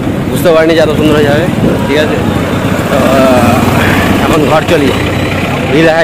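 A man talking in short phrases over the steady running of a motorcycle and its road and wind noise.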